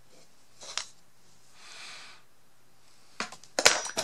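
Small metal hand tools (picks and tweezers) clicking and clinking as they are handled on a wooden tabletop: one click about a second in, a faint hiss in the middle, then a quick run of sharp clicks near the end.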